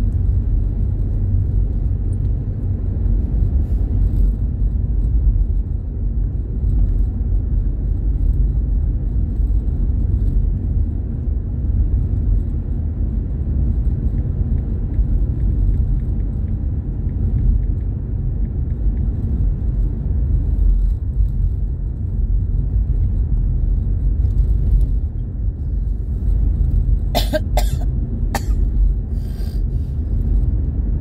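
Steady low road and engine rumble of a moving car, heard from inside the cabin. Near the end comes a brief cluster of three or four sharp sounds.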